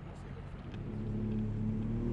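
Outboard motor of a rigid inflatable boat running with a steady low hum that grows gradually louder.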